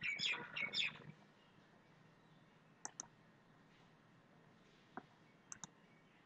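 Computer mouse clicking. There is a quick cluster of clicks in the first second, then a double click about three seconds in, a single click, and another double click near the end.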